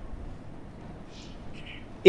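Quiet room tone in a pause between spoken sentences, with two faint, brief high-pitched sounds in the second half.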